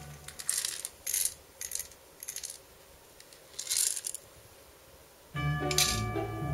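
Dry hamster food, seeds and pellets, dropped by hand into a small metal feeding tray: a series of short rattling clinks spread over the first four seconds, with one more near the end. Background music comes back in about five seconds in.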